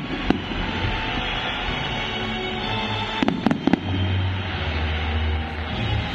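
Fireworks going off over loud show music: a sharp bang just after the start, then a quick cluster of about four bangs a little past the three-second mark, with crackling throughout.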